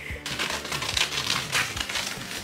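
A large piece of white fabric rustling and crinkling as it is handled and lifted, a dense run of irregular crackles.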